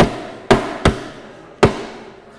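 Four sharp knocks close to the microphone, unevenly spaced, each followed by a short decaying ring.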